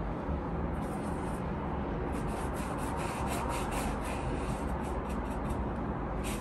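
Paintbrush rubbing thinned yellow oil paint onto canvas in short strokes, a soft brushing about three times a second from about two seconds in, over a steady low background hum.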